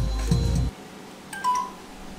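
Background music that stops under a second in, followed by a brief bright chime about a second and a half in.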